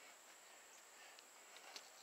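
Near silence: a faint outdoor background with a thin, steady high-pitched tone and a few faint ticks in the second half.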